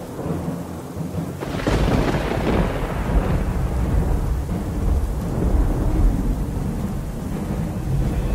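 Thunderstorm sound effect: a thunder crack about a second and a half in that breaks into a long low rolling rumble, over a steady hiss of rain.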